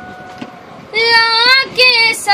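A young girl singing a Punjabi song in a high voice. A faint held note comes first, then the voice comes in loud and bending in pitch about a second in, with a short breath-break before the next phrase. Soft taps come from a hand drum on her lap.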